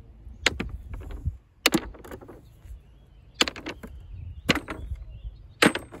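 Rocks tossed into a plastic bucket around the base of a frost-free hydrant, landing on the stones already there as sharp clacks, about ten of them in quick clusters of two or three.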